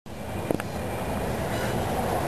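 Steady background noise in a room, with two short clicks about half a second in.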